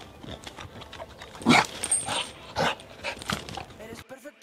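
An American bulldog vocalizing in a few short, loud bursts while biting and tugging at a toy held by the trainer, the loudest about a second and a half in.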